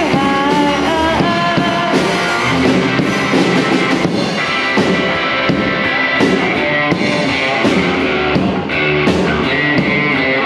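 Live rock band playing: electric guitar, acoustic-electric guitar and drum kit with steady cymbal and drum hits. A woman sings briefly near the start, then the band plays on without vocals.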